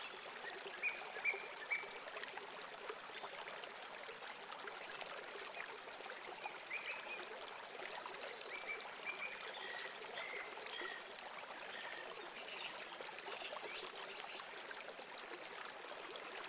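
Short, scattered chirps of house sparrows, loudest in the first two seconds, over a steady rush of running water.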